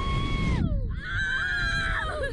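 Two young riders on a slingshot catapult ride screaming. First comes one long scream that rises, holds and falls away. About a second in, both scream together at different pitches, over a low rumble.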